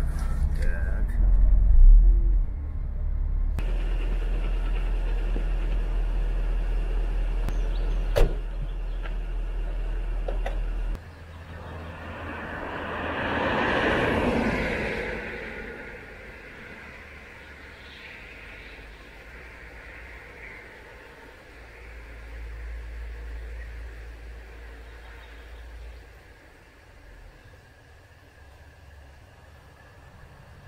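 Car interior rumble of engine and road noise while driving, with a sharp click about eight seconds in. The rumble stops suddenly about eleven seconds in, and a vehicle passes by outside, its noise rising and fading over a few seconds. A fainter swell of traffic noise follows later.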